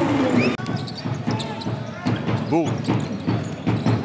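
A basketball being dribbled on a hardwood arena court: a string of sharp bounces over the hall's background voices. The sound breaks off abruptly about half a second in, then the bounces carry on.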